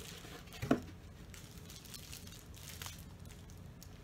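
Packaging being handled: a plastic bag crinkling and cardboard rustling as a plastic-wrapped diffuser is pulled out of its box, with one short, louder knock just under a second in.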